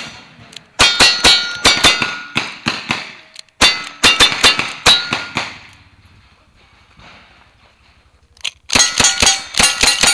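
Rapid gunshots, each answered by the ringing clang of a steel target being hit. After a pause of about three seconds the shots and rings come again, fast: lever-action rifle fire on steel plates.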